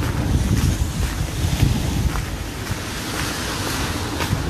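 Wind buffeting the phone's microphone in a steady, rumbling rush, with street traffic noise mixed in.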